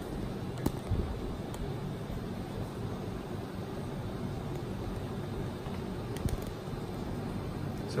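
Steady low background hum and hiss, with a few faint clicks and knocks in the first couple of seconds and again near the end.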